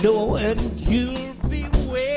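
Live rock band playing, with drum-kit beats and cymbals under a lead line that slides up and down in pitch.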